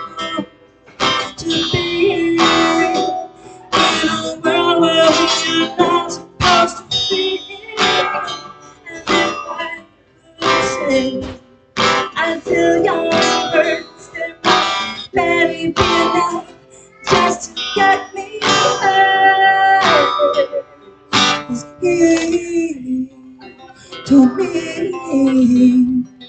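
An acoustic guitar is strummed in a solo song, with a woman's singing voice over it.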